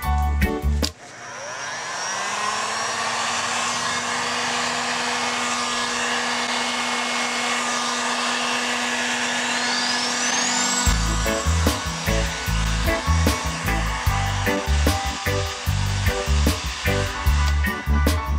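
Music cuts off about a second in as an electric heat gun starts, its fan spinning up to a steady blowing whir with a low hum, as it passes over poured epoxy resin to pop surface bubbles. Upbeat music returns past the middle.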